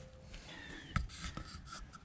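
Faint rustling with a few soft clicks, about a second in and again shortly after: handling noise from a handheld camera being moved.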